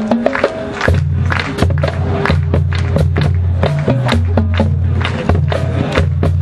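Marching band playing: percussion hits on a quick steady beat over a held low bass line that comes in about a second in.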